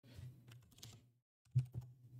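Computer keyboard keystrokes, faint: a short run of key presses typing a quick division into a calculator, with one louder keystroke about one and a half seconds in.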